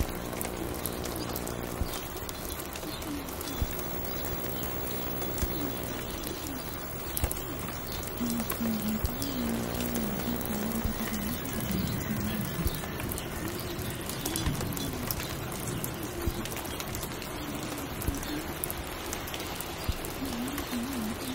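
Rain ambience: steady rain hiss with scattered small clicks and crackles, and a low hum in the first two seconds. Low, wavering bird calls come in at intervals, most prominent around the middle.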